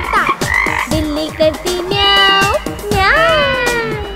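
A cartoon frog croaking, followed by more gliding animal calls, over upbeat children's song backing music with a steady beat.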